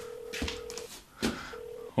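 Telephone ringback tone of an outgoing call: a steady ring of just under a second, then a shorter second ring near the end, with two short thuds in between.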